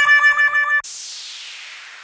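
Edited-in sound effects: a held, buzzy electronic tone with many overtones cuts off abruptly under a second in, and a hissing swoosh follows, sweeping downward in pitch and fading away.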